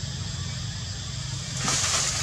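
Steady outdoor background hiss with a thin high whine and a low rumble underneath, swelling into a louder burst of hiss near the end.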